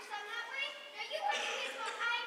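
Children's voices speaking lines on a stage, heard from across a large hall.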